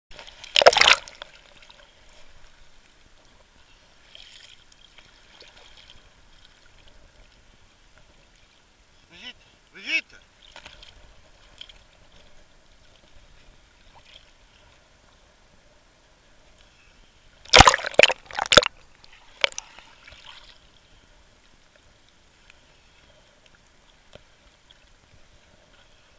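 Sea water lapping and sloshing against an action camera's waterproof housing at the surface. There is a loud splash about a second in and a smaller one in the middle. A burst of several splashes comes about two-thirds of the way through.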